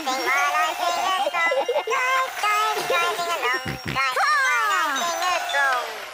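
A toy car's cheerful sung tune that dies away at the end as the car stops, its batteries run flat.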